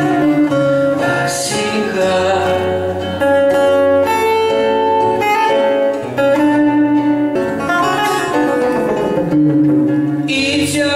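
Two acoustic guitars, one of them a nylon-string classical guitar, played live as accompaniment to male vocals singing long, held notes in a slow song.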